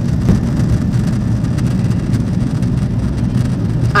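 Steady noise of jet engines and airflow inside an airliner's cabin, climbing shortly after takeoff, heaviest in the low range.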